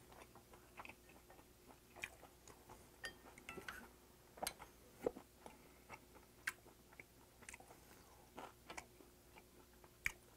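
Faint, close-miked chewing, with scattered soft clicks and ticks from chopsticks and a wooden spoon working in an earthenware pot of doenjang.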